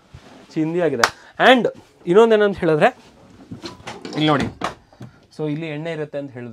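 A man speaking in short phrases with pauses between them.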